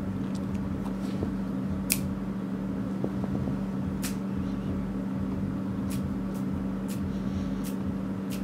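A steady low mechanical hum, with a few faint sharp clicks scattered through.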